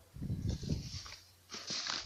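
Dry sea sand being poured into a plastic-lined basket: a low, rough pour for about the first second, then a steady hiss near the end.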